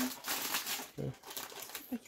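Paper and packet rustling and crinkling as a box of tea bags is opened, its paper liner folded back and a wrapped tea bag pulled out.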